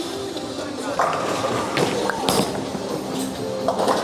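A bowling ball is released, lands on the wooden lane with a thud and rolls toward the pins, under steady background music.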